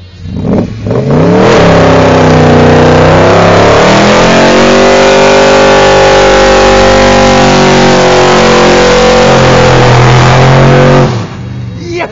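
BMW M5-engined Cobra revving hard during a burnout: the engine climbs in pitch over the first few seconds, is held at high revs and very loud, then drops off suddenly near the end.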